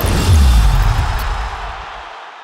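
A short closing music sting: a sudden deep bass hit with a wash of noise over it, fading out over about two seconds.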